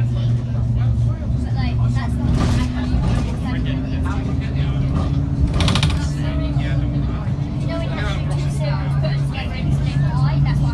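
School bus engine running as the bus drives along, its pitch stepping up slightly a couple of times, with background chatter of passengers' voices. A short burst of noise comes a little after halfway through.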